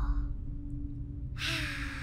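A cartoon character's breathy sigh, an exhale with a slight falling pitch, starting about one and a half seconds in over a steady low hum.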